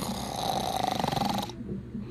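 A sleeping person snoring: one long, rattling snore of about a second and a half that stops abruptly.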